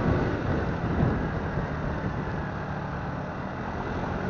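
Motorbike engine running steadily while riding along a street, with wind noise on the microphone and a low road rumble.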